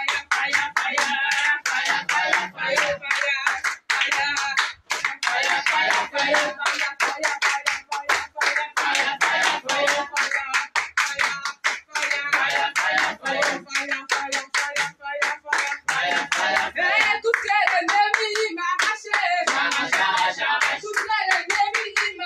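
A small congregation singing together with steady rhythmic hand-clapping in a small room.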